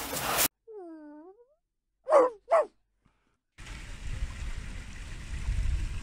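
An animal's calls: one drawn-out call that dips and then rises in pitch, followed about a second later by two short, loud calls a little under half a second apart. Before them there is a brief burst of noise, and after them a steady outdoor background with a low rumble.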